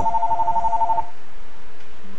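A telephone ringing: one rapid, evenly pulsing two-tone trill that lasts about a second and then stops.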